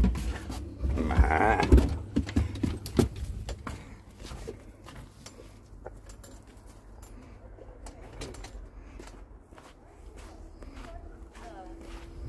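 A door being opened, with knocks and a short wavering squeal in the first two seconds. Then quieter, irregular footsteps crunching on fresh snow.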